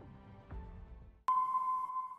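Faint background music fading out, then, about a second and a quarter in, a sudden steady electronic tone with a hiss over it: a newscast's transition sound effect accompanying its logo graphic.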